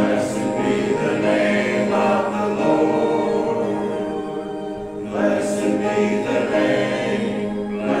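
Congregation singing a hymn together, with a short break between lines about five seconds in.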